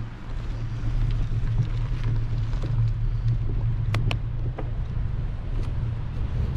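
Wind buffeting the microphone of a bicycle-mounted camera as a touring bike rides along a paved road: a steady low rumble that builds over the first second. A couple of sharp clicks about four seconds in.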